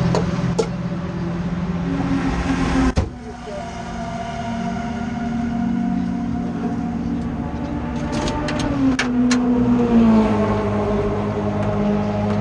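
Race car engine idling while the car stands still, heard from inside the cockpit, its note shifting slightly in pitch a couple of times. A sharp click about three seconds in and a few more sharp clicks between eight and nine and a half seconds.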